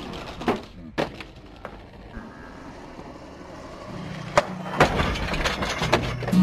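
Skateboard knocks and clacks: a deck and wheels hitting concrete and a wooden box. A few separate knocks come in the first two seconds, then a quieter stretch, then a cluster of louder knocks near the end.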